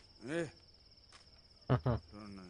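Crickets chirping in a steady high trill, with two short voice sounds: one about a third of a second in and a louder one near the end.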